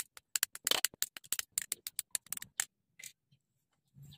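Plastic model-kit runners rattling and clicking against each other as they are handled: a quick run of sharp clicks for under three seconds, then one more click about three seconds in.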